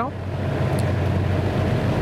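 Steady low drone of the survey boat's engine running.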